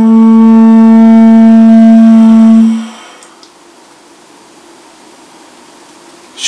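Conch-shell trumpet (horagai, a large triton shell) blown in one long, loud, steady low note that stops about two and a half seconds in.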